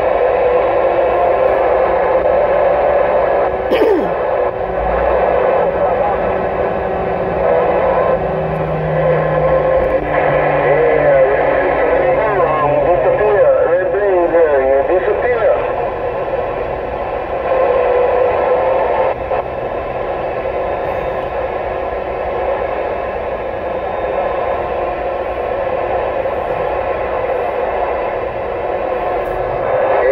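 Uniden Grant XL CB radio receiving: a steady hiss of static with faint, unintelligible voices. From about ten to sixteen seconds in, warbling whistles wander up and down over the noise.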